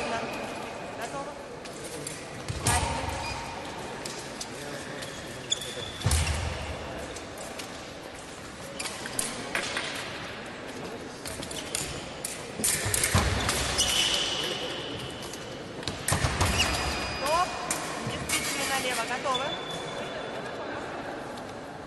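Fencers' footwork on the piste in a large, echoing sports hall: several sharp stamps and thuds of lunging and advancing feet, with brief high shoe squeaks, over a murmur of background voices.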